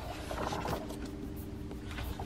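Glossy pages of a large printed instruction manual being flipped, a soft paper rustle. Under it, from about half a second in, there is a faint steady hum of a few low tones.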